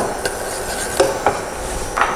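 Wooden spoon stirring in a stainless steel saucepan, with a few light knocks of the spoon against the pan, the clearest about a second in.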